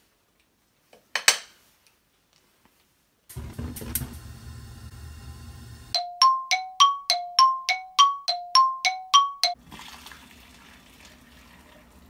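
A two-note chime, about a dozen bright ringing strikes alternating between a low and a high note at about three a second, starting about halfway through and lasting some three and a half seconds. Before it come a single faint tap and a low hum.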